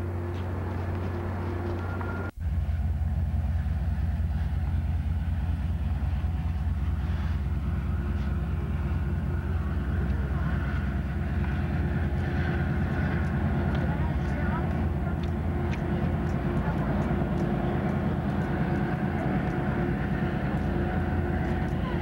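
Freight train rolling past briefly, then, after a sudden cut about two seconds in, a Metrolink commuter train's diesel locomotive running steadily as it departs: a low drone with a faint steady whine over it.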